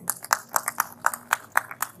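Scattered audience applause: a few people clapping, with irregular separate handclaps rather than a full ovation.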